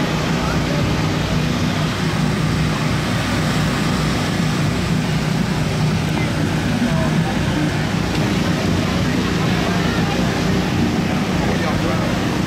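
A steady, unbroken low engine hum with the chatter of a crowd.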